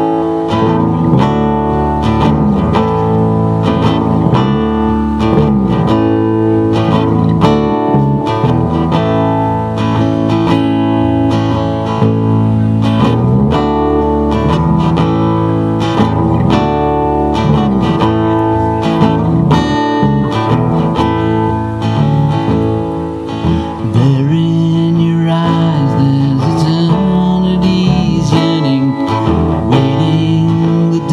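Acoustic guitar strummed steadily together with an electric guitar, an instrumental song intro played live that starts sharply on a count-in.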